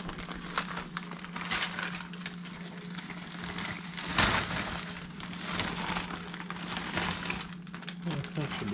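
A plastic bag of frozen stir-fry vegetables crinkling as the frozen pieces are shaken out and drop clattering into a cast-iron skillet, in irregular bursts of clicks and rustling, loudest about four seconds in.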